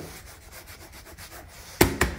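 A hand rubbing and sliding over a motorcycle's plastic bodywork and fuel tank, a faint scraping, then a single sharp knock near the end.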